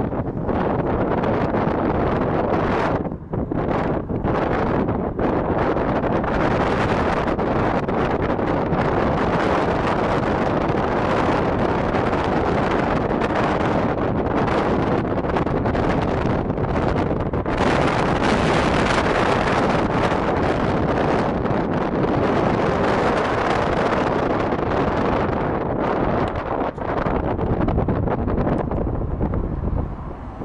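Wind rushing over the microphone at an open car window while driving, with road and engine noise under it. The rush drops briefly a couple of times.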